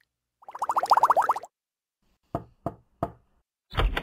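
Cartoon sound effects: a warbling tone for about a second, then three quick pops, then a low thump near the end.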